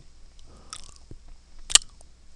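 A faint rustle about half a second in, then one sharp, loud click near the end.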